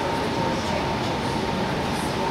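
Steady rushing background noise with a faint, steady high tone running through it, with no distinct events.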